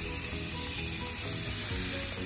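Raw steaks sizzling steadily as they sear on contact with GrillGrate grill grates heated to five to six hundred degrees over charcoal. Music plays faintly underneath.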